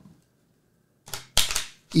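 A deck of playing cards being shuffled: two quick crackling riffles of the cards about a second in, the second one louder.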